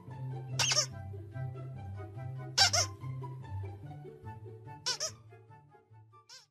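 A squeaky plush toy squeaked three times, about two seconds apart, each squeak short and high. Background music with a steady bass line plays throughout.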